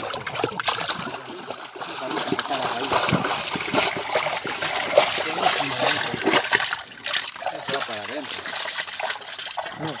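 A hound digging and scrabbling through wet mud and muddy water inside a burrow, splashing busily, the activity thinning out after about seven seconds.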